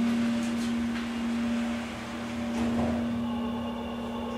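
Schindler 330A hydraulic elevator running as the car travels, a steady low hum of one pitch throughout, with faint higher tones joining near the end.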